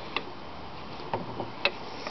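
A few light mechanical clicks, about four spread over two seconds, as coupled Briggs & Stratton engine blocks with the heads off are turned over slowly by hand through a machined shaft coupling.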